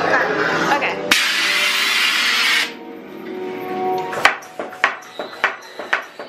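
Voices, then a sudden loud hiss about a second in that lasts about a second and a half and cuts off sharply. It is followed by background music with several sharp knocks near the end.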